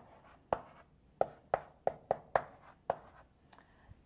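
Chalk writing on a blackboard: a string of short, sharp taps and scrapes as the chalk strikes and drags across the board, about eight strokes spread irregularly over the first three seconds, thinning out near the end.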